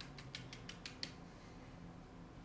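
A quick run of about eight light clicks and taps in the first second as things are handled and set down on the work table, then only a faint steady room hum.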